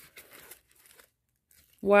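Faint crinkling of plastic shrink wrap on a sealed vinyl LP as it is handled, in short scattered rustles during the first second.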